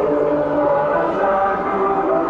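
Live music from the festival procession: several held tones that step from pitch to pitch in a slow melody, over the hubbub of the crowd.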